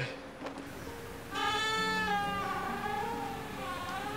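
Film background music: steady held low chords, joined a little over a second in by a long, gently wavering high note that lasts about two seconds.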